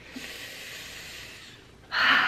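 A woman breathing out audibly through her mouth during a pause in speech, then taking a sharper, louder breath in near the end.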